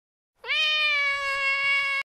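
A single held pitched note from the closing logo's sound effect: it enters about half a second in with a quick upward scoop, holds one steady pitch, and cuts off sharply at the end.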